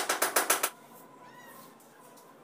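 Cement mortar being scraped onto the back of a ceramic wall tile in a quick run of short scraping strokes, about ten a second, which stop under a second in.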